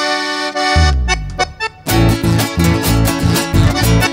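Live band starting a song: a held chord, then a bass line stepping down, and about two seconds in the full band comes in with a steady dance beat and guitar.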